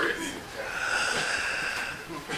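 A man's long, breathy exhale, drawn out for about a second and a half after a brief vocal sound at the start.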